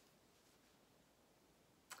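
Near silence: faint room tone, with one brief click near the end.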